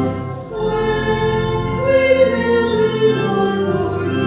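Voices singing a slow church hymn in long held notes, with a brief dip between phrases about half a second in.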